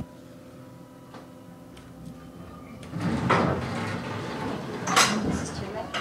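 Elevator car doors sliding open about halfway through, after a few seconds of faint steady hum in the stopped car, with a sharp knock about five seconds in as they finish opening.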